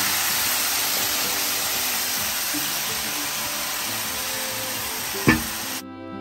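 Marinated chicken frying in hot ghee in a pan, a dense, steady sizzle that eases slightly as it goes on. A single sharp knock comes about five seconds in. Just before the end the sizzle cuts off and guitar music takes over.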